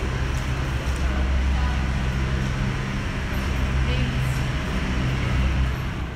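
A steady, loud low mechanical drone with indistinct voices faintly in the background.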